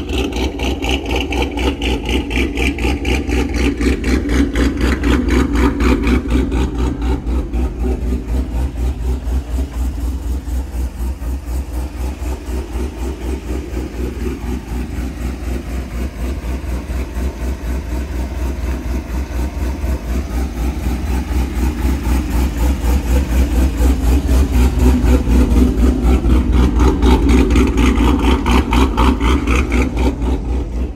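Cammed V8 in a lowered GMC Sierra pickup, fitted with a BTR Stage 4 cam and a Corsa Extreme equal-length exhaust run without resonators, idling with a loud, evenly pulsing exhaust beat. It grows louder over the last third.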